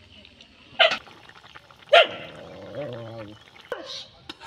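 An animal calling: two short, loud calls about a second apart, then a softer, wavering pitched call.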